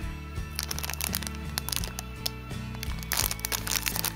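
Background music with low notes that step steadily from one to the next, under the light crinkle of a clear plastic sleeve around enamel pins being handled. The crinkling grows busier near the end as the packet is moved.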